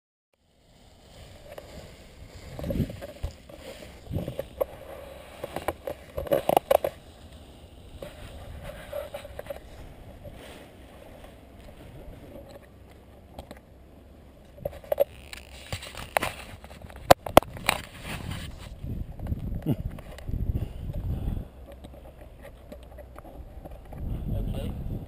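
Wind buffeting a camera microphone, with irregular knocks and rustles of the camera being handled, starting about a second in and loudest around six seconds in and again around seventeen seconds.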